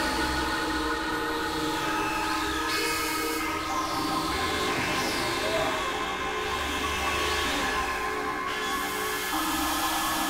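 Dense, processed experimental electronic music: several layered drone tones held steady, with repeated falling sweeps sliding down from high pitch every few seconds.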